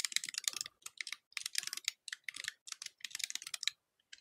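Fast typing on a computer keyboard: quick runs of keystrokes with short pauses between them, stopping shortly before the end.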